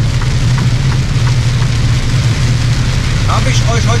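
Steady low drone of a truck's engine and tyres on a rain-wet motorway, heard from inside the cab, with a constant hiss of spray and rain over it.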